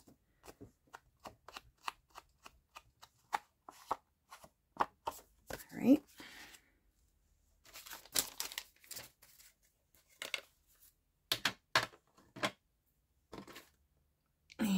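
Ink blending tool dabbed and swiped along the edges of a paper pocket card, a run of short scuffs on paper at about two or three a second, with brief pauses.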